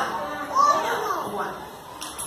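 Voices of a group of young children talking and calling out.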